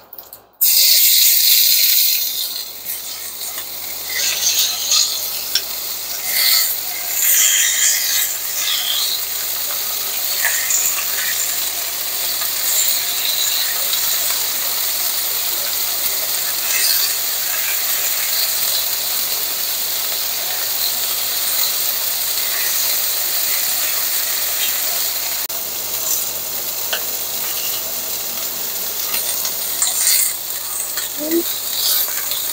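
Jerk-seasoned chicken thigh pieces hitting hot canola oil in a nonstick frying pan on medium-high heat: a loud sizzle starts suddenly about half a second in, then settles into a steady sizzle with small crackles.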